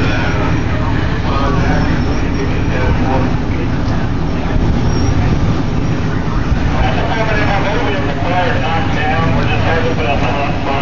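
Fire engine's diesel engine running steadily at a fire scene, a constant low rumble, with voices faintly heard in the second half.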